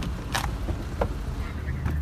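A car engine running steadily at idle, a low rumble, with a short rustle about half a second in and a couple of faint clicks as the phone is carried out of the car.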